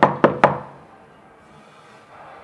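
Knuckles knocking on a paneled wooden door: three quick raps in the first half second, closing a run of knocks.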